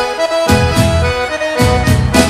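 Instrumental sertanejo music led by accordion, with sustained notes over bass and a drum beat.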